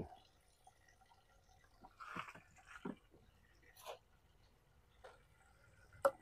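Near silence, with a few faint, short crunches and scrapes of potting soil being pressed and worked into a bonsai pot by hand and a small trowel, about two and three seconds in and once more near four seconds.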